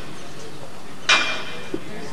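A single sharp metallic clank about a second in, with a brief ring, as metal parts of a farm implement are knocked together while being handled; a smaller click follows. A steady hiss runs underneath.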